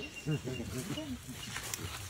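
A person's playful vocal noises made at a toddler: a quick run of short calls that rise and fall in pitch in the first second or so, then quieter.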